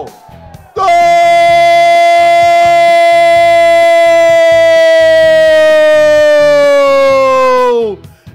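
Football commentator's drawn-out goal cry, "Gooool", held on one steady note for about seven seconds from about a second in, its pitch sagging as his breath runs out near the end. Background music plays underneath.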